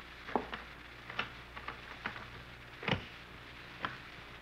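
Radio-drama sound effect of a vault's combination dial being turned: a row of separate sharp clicks, a few a second and unevenly spaced, with a heavier click about three seconds in. A steady low hum from the old recording lies underneath.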